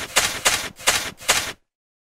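Logo-animation sound effect: a quick run of about five short, sharp noisy hits, roughly three a second, as animated pieces drop into a logo. It stops about one and a half seconds in.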